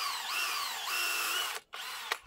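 Cordless drill boring a tap hole into the trunk of a mono maple (gorosoe) for sap. The motor's pitch drops and recovers as the bit bites into the wood. It stops about a second and a half in, then gives one brief second burst near the end.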